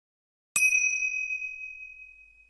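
A single bright electronic ding, struck about half a second in and ringing on as it slowly fades: the chime sting that goes with a streaming service's logo card.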